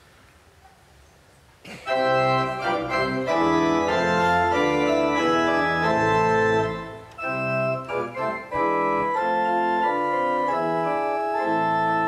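Church organ playing a hymn introduction in sustained full chords. It comes in about two seconds in, after a near-quiet start, and dips briefly about halfway through.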